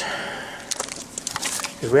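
A string of irregular sharp crackles and clicks.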